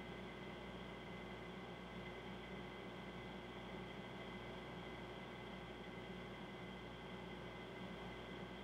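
Faint steady hiss with a few faint steady hums: room tone, with no distinct event.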